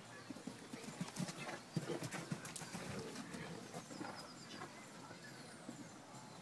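Hoofbeats of a horse cantering on grass as it passes close by: a run of dull thuds, loudest from about one to three seconds in, then fading as it moves away.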